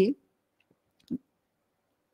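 A single short click about a second in, in otherwise dead silence between a woman's phrases, with a fainter tick just before it.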